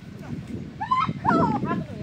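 Women's voices shouting in short, bending bursts in the second half, over a rough low rustle from a scuffle on the dirt.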